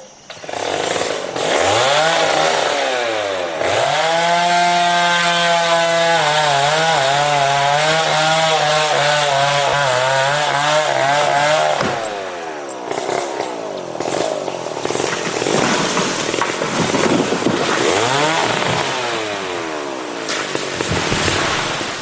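Chainsaw cutting into timber, its engine revving up and down. It holds a steady high pitch from about four to twelve seconds in, then revs unevenly.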